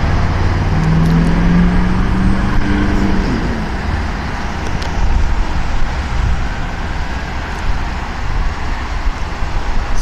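Vehicle engines and road traffic, a loud, steady low rumble, with one engine's steady drone standing out for about three seconds near the start.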